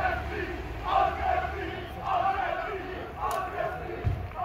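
A group of men chanting a rhythmic victory cheer, shouting together in unison about once every second and a bit.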